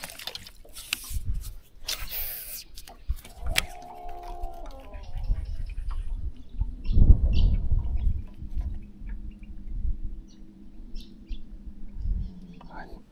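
A baitcaster rod being cast in wind: a short whirr of reel and line about two seconds in, wind rumbling on the microphone, and a steady low hum from about eight seconds on.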